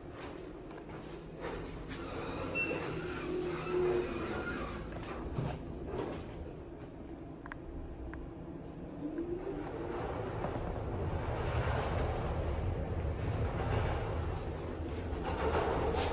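Schindler 5500 elevator car starting off and travelling, heard from inside the car: a short rising whine from the drive about nine seconds in, then a steady low rumble of the moving car that grows louder toward the end.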